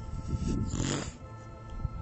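A short, noisy breath drawn in through the nose, about half a second in, over soft background music with steady held tones.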